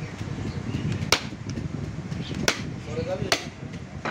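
A heavy butcher's cleaver chopping through beef into a wooden chopping block: three sharp strikes, about a second in, midway through, and near the end.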